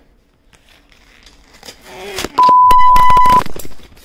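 A phone being dropped: a brief cry and a clatter of knocks about two seconds in, then a loud, steady electronic beep lasting about a second, a censor bleep laid over the reaction.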